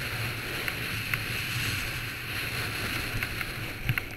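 Snowboard sliding over packed snow at speed, with wind on a GoPro's microphone: a steady hiss over a low rumble, with a few small clicks and a sharper knock near the end.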